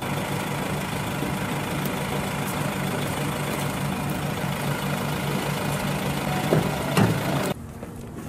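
A vehicle engine idling close by, a steady low pulsing rumble. Two brief louder sounds come near the end, and the engine sound cuts off suddenly just before the end.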